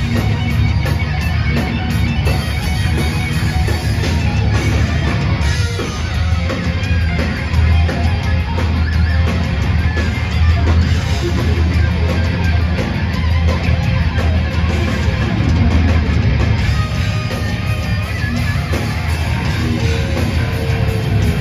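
Thrash metal band playing live: distorted electric guitars, bass and drums, loud and continuous.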